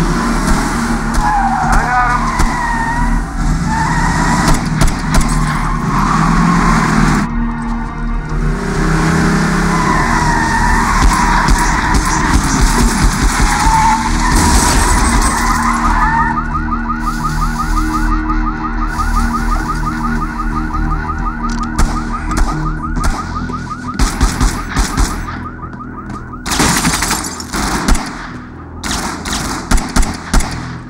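Car-chase soundtrack: car engines and wavering high squealing tones over score music. A fast pulsing tone runs for about ten seconds after the midpoint, then a string of sharp hits comes near the end.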